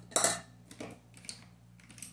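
Small objects clattering and rustling as makeup items are rummaged through, with one sharper knock near the start and a few lighter clicks after.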